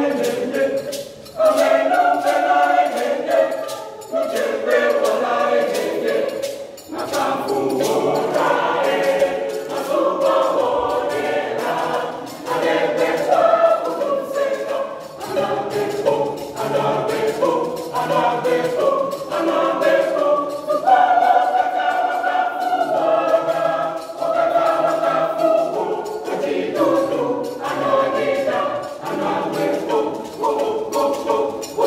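A junior church choir of young voices singing together, with regular hand claps.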